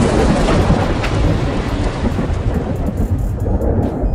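A loud, thunder-like rumble with a rain-like hiss, from the dramatic soundtrack of the edited clip being played back. It holds steady and begins to die down near the end.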